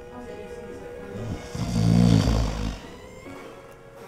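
A man gives one loud, low, rasping groan of exasperation, starting about a second in and lasting over a second, over quiet background music.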